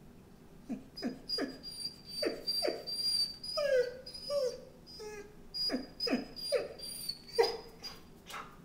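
Akita dog giving about a dozen short whining yelps in quick succession, each dropping in pitch, with two longer drawn-out whines near the middle; excited vocalising in answer to being offered a walk.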